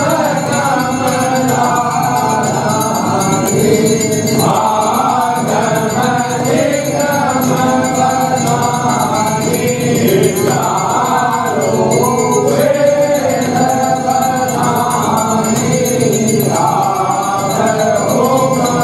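Group of voices singing a Hindu aarti hymn in chorus, in long repeating phrases.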